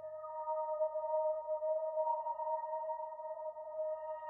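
Instrumental opening of a hymn recording: one soft, held chord of steady sustained tones that swells during the first second and then holds.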